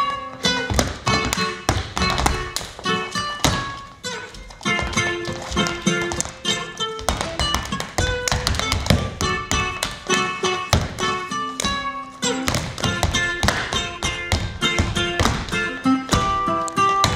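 Flamenco-style footwork, with dancers' shoes stamping and tapping rhythmically on a wooden floor, over a small acoustic plucked-string instrument played live.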